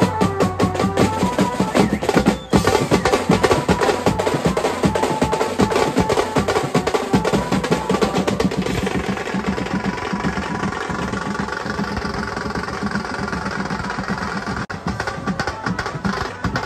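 Live Marathi banjo band playing fast, dense drumming on snare drums, a bass drum and cymbals. A melody line sounds over the drums in the first few seconds and thins out after about halfway, leaving mostly drumming.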